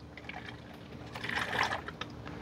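Motor oil pouring from a bottle through a funnel into the engine's oil filler: a faint pour that swells slightly past the middle, topping the oil up to the right level.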